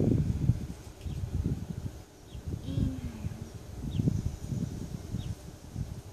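Wind buffeting the microphone in irregular low rumbling gusts, with a few faint short bird chirps above it.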